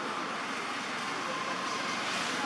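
Steady outdoor background noise: a continuous, even hiss with no distinct events.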